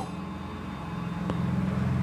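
A steady low hum with a few sustained low tones, slowly growing louder.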